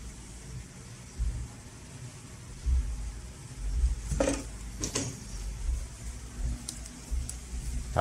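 Low, uneven rumble of a handheld camera being moved, with two short rustles about four and five seconds in.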